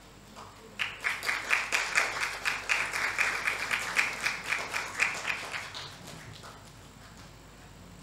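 Hand clapping from a small group at about four or five claps a second. It starts about a second in and fades out near six seconds.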